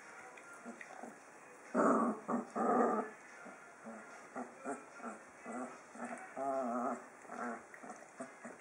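Magyar vizsla dogs vocalizing: two loud, rough sounds about two seconds in, then a string of short, low pitched grumbles, one of them longer and drawn out near the end.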